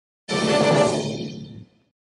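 Short musical logo sting: a chord that starts suddenly a moment in and dies away within about a second and a half.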